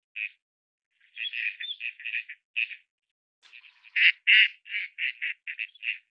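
Gadwall calling: a short call, then quick runs of brief calls, the loudest just after four seconds in, trailing off toward the end.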